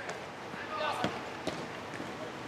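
Futsal ball being kicked and played on an artificial-turf court: a few sharp knocks, the clearest about a second and a half apart near the middle and end, with faint player shouts in the background.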